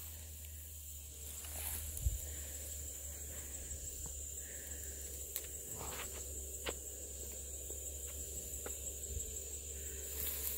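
Footsteps through cut grass and dry brush, with a few scattered crunches and snaps underfoot, over a steady high-pitched insect drone.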